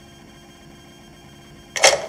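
A low steady hiss from the played-back test recording, then one short, sharp noise lasting about a quarter of a second near the end.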